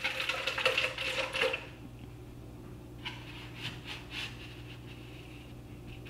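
About a second and a half of light clattering and rustling, as of plastic cups and trays being handled, then a faint steady low hum with a few soft clicks.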